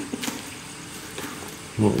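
Scissors cutting through clear packing tape on a small cardboard box: a few short snips and crackles in the first half-second, and a fainter one about a second in.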